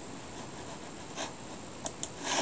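Steady background hiss, with a faint short rustle just past a second in and a faint click near the end.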